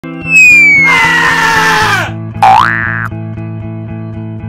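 Intro logo sound effects over a music bed with a steady beat: a falling whistle and a loud swoosh, then about two and a half seconds in a springy upward-gliding boing.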